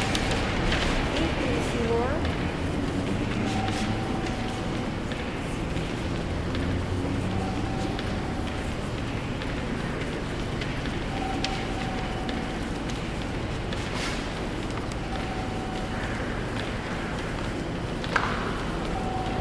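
Indistinct voices over a steady low hum, with a short steady tone that recurs every three to four seconds.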